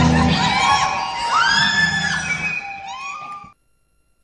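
Sound track of a homemade production-logo sting: loud music for the first moment, then a string of high, arching squeals like screaming that fade and cut off suddenly about three and a half seconds in.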